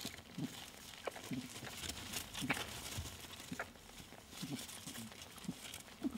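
Rabbit kits scrambling under their nursing mother in a dry straw nest: irregular rustling and crackling of straw and fur with small clicks, and short low animal sounds every half second or so.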